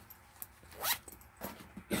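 Zipper on a small fabric cosmetic bag pulled open in one quick, rising zip about a second in, with a few faint handling clicks around it.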